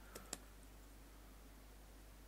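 Two faint computer keyboard keystrokes near the start, then near silence with a steady low hum.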